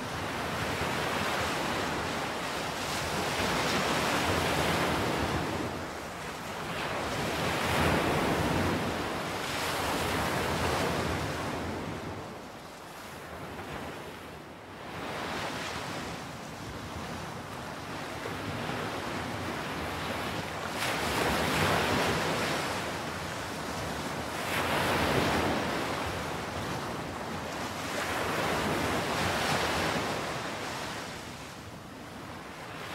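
Sea surf breaking on a beach, the wash swelling and fading in surges every few seconds.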